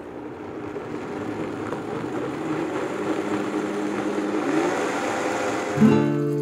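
Countertop blender motor running, puréeing softened guajillo chilies, tomatillos and tomatoes into a smooth yellow mole base; its sound grows steadily louder. Near the very end music comes in abruptly.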